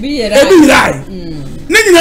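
A man's voice, speaking loudly and excitedly in two short bursts, the second starting near the end.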